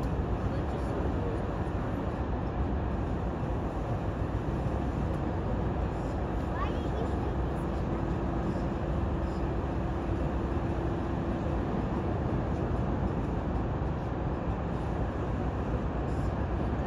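Steady low rumble of harbour ambience as a tanker is moved by tugboats, with a faint steady hum for a few seconds in the middle.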